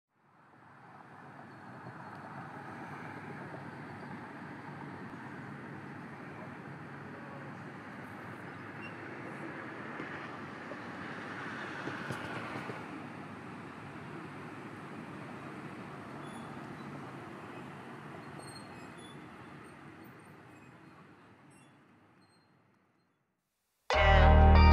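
Steady vehicle rumble as an ambient noise bed, fading in over the first couple of seconds, swelling slightly about halfway, and fading out a second or two before the end.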